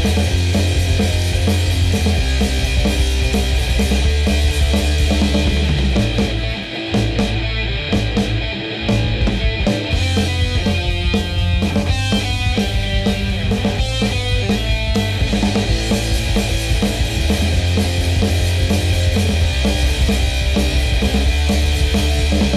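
Instrumental passage of a punk rock song, with electric guitar, bass guitar and drum kit playing and no vocals. The drums and bass thin out briefly about a third of the way in, then the full band comes back.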